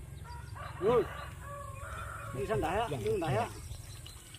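A rooster crowing.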